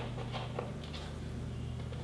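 Faint light taps and rubbing against a whiteboard as a small triangle symbol is put onto it, over a low steady hum.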